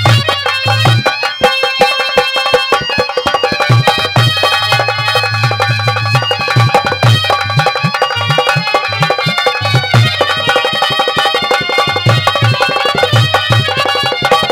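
Live instrumental music of a Haryanvi ragni: a hand drum beats a quick, steady rhythm under a sustained melody instrument, with no singing.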